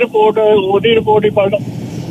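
Speech only: a person talking in Punjabi, with a short pause near the end.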